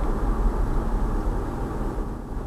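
Steady low road and engine noise inside a moving car's cabin.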